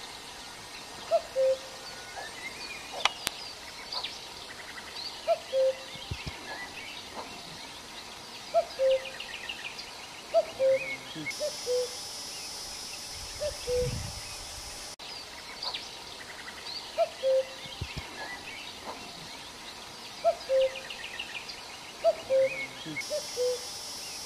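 Birds calling: a low two-note call, the second note lower than the first, repeats every second or two, with higher chirps from other birds in between.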